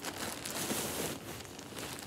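A plastic poly mailer and the thin plastic bags inside it crinkling and rustling as they are pulled out by hand.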